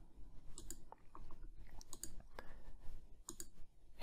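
Computer mouse button clicking: a few light, scattered clicks as the play button of a Photoshop action is pressed again and again.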